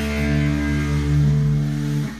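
Rock band's final chord ringing out: distorted electric guitar and bass holding steady notes over a fading cymbal wash, dropping away at the end as the song finishes.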